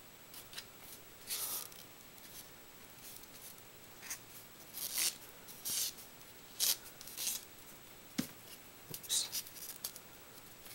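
Paper strips rustling and rubbing as they are handled and wrapped around a rolled-paper tube. The sound is a series of short, scratchy strokes at irregular intervals.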